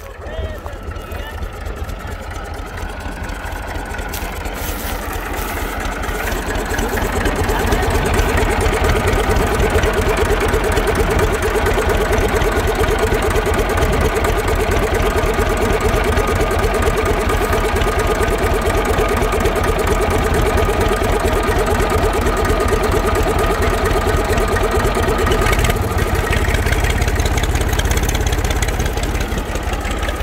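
IMT 539 tractor's three-cylinder diesel engine running with a steady, even chug while pulling a plough through the soil. It grows louder over the first several seconds as the tractor comes closer, then holds steady.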